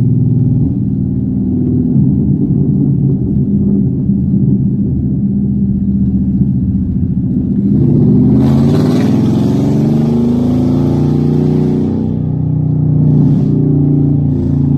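Ford Mustang GT's V8 engine running while driving, heard from inside the cabin. Its pitch shifts as the revs climb about eight seconds in, with a rush of noise for the few seconds after.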